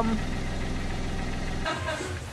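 Car engine running, heard inside the cabin as a steady low hum, cutting off suddenly near the end.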